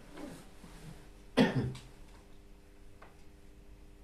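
A single short cough about a second and a half in, with a faint steady hum in the room.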